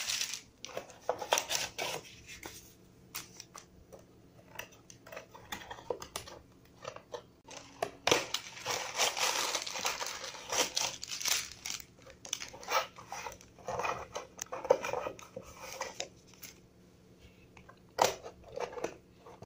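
A cardboard toy box being handled and opened, and plastic bags of building bricks crinkling and rustling as they are pulled out. The crinkling comes in irregular bursts and is most continuous about eight to eleven seconds in.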